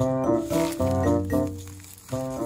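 Background music: a tune of short pitched notes over a bass line.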